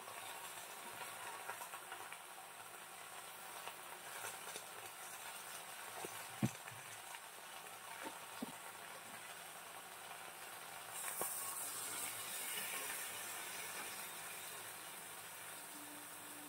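Faint, steady sizzle of Malabar spinach (pui shak) cooking in a pan of hot mustard oil, with a couple of light knocks about six and eight seconds in.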